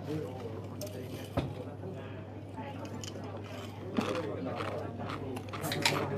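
Indistinct voices talking over a steady low hum, with a sharp click about a second and a half in and a few smaller clicks later.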